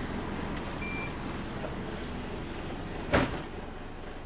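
Steady low rumble of a Wright StreetLite DF single-deck bus running, heard from inside the saloon. A faint click comes about half a second in, a short high beep near one second, and a sharp thump, the loudest sound, a little after three seconds.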